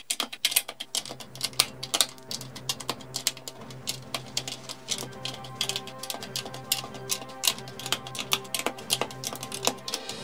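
Plastic LEGO bricks clicking and tapping as roof slope pieces are pressed onto studs, many sharp clicks a second, over background music.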